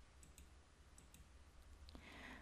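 Near silence: faint room tone with a handful of small, quiet computer-mouse clicks as the slides are advanced.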